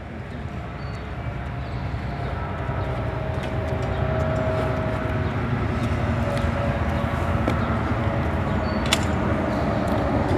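Steady low vehicle engine rumble, fading in over the first few seconds, with a faint steady hum and one sharp click near the end.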